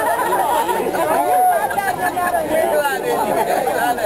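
Ballpark crowd chatter: many spectators talking at once, the voices overlapping into a steady babble.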